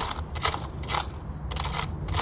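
Loose coins clinking and rattling as a hand sifts through a cardboard box of them, in four or so short bursts about half a second apart.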